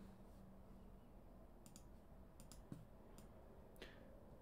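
Near silence: room tone with a few faint, scattered clicks in the second half.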